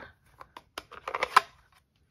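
Small plastic clicks and taps as a stamp ink pad's hinged plastic case is picked up and opened. A few spread-out taps come first, then a quick run of clicks with the loudest just over a second in.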